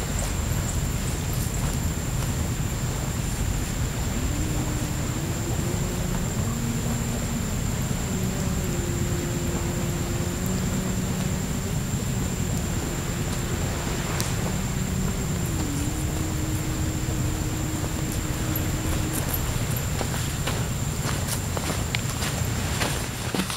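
A faint, unexplained drawn-out tone, like distant humming or singing, holds a few notes in turn and steps up and down in pitch for about fifteen seconds. It sits under a steady wind rumble on the microphone and a thin, steady high whine. A few footsteps come near the end.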